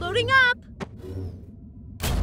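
Cartoon sound effects as the package ball is loaded into the jet: a short rising, warbling tone, then a sharp click just under a second in, followed by a low steady hum.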